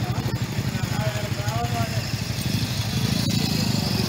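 Motorcycle engine idling close by, a steady rapid chug of about ten beats a second, a little louder near the end.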